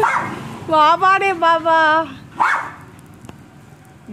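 Small German Spitz dog barking and whining: a short bark at the start, a longer wavering whine broken into several pieces, then another short bark.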